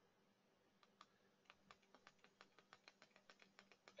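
Near silence, with faint computer mouse clicks coming in quick succession, several a second.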